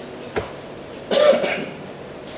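A person clearing their throat in a short half-second burst about a second in, after a brief sharp knock.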